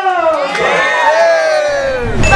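A small group of young people cheering together as they raise glasses for a toast: long, drawn-out shouts from several voices, each sliding down in pitch.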